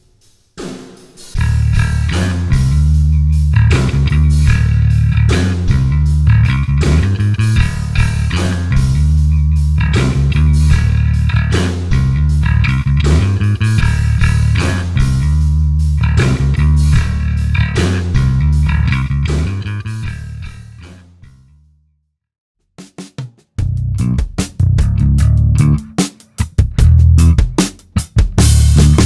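Five-string electric bass guitar played through a Gallien-Krueger Fusion S series bass amp head (tube preamp, Class D power), with a drum beat behind it. The first groove fades out about three quarters of the way through; after a short silence a second passage begins with choppy stop-start notes.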